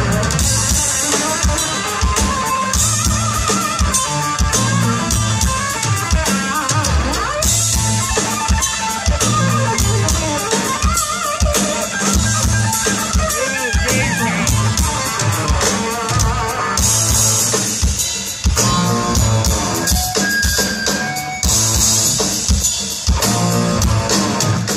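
Live rock trio playing loud: electric guitar and bass guitar over a drum kit, with stretches of cymbal wash, heard from the crowd.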